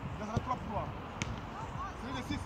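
Indistinct voices of children talking across the pitch, over a steady low background rumble, with one short sharp tap a little over a second in.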